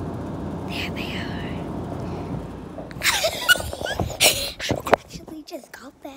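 Steady low noise for the first half, then a girl's breathy whispering mixed with rustling and knocks of the phone being handled as she moves about. It drops to quiet near the end.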